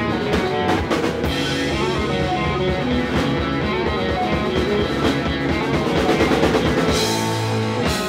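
Punk rock band playing an instrumental passage on electric guitars and drum kit, loud and steady.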